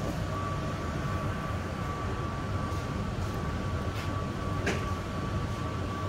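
Stationary automated people-mover car (Mitsubishi Crystal Mover Skytrain) standing at the platform with its doors open: a steady hum and low rumble with a thin, steady high tone, and a light click or two about two thirds through.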